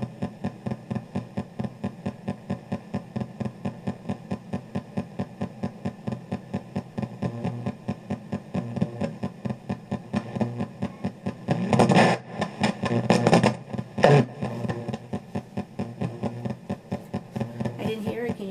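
Ghost-box radio rapidly sweeping through stations and played through a karaoke machine's speaker: an even chopping of static and clipped radio fragments, about three or four a second. Louder bursts of radio sound come around the middle.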